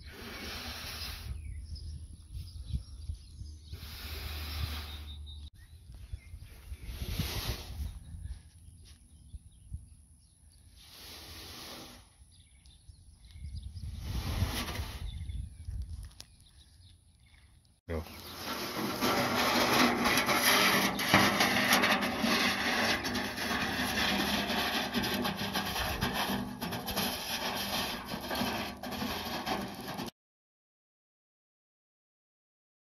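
Rusty steel wheelbarrow tub dragged by a strap over grass and dirt as a homemade sled, scraping in separate pulls about every three seconds. About eighteen seconds in this changes suddenly to a steady, louder scraping.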